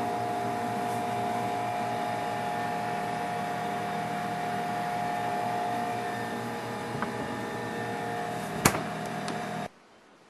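Steady mechanical hum of a refrigerator running, with a constant whine in it. Near the end glass bottles clink sharply a couple of times, and then the hum cuts off suddenly.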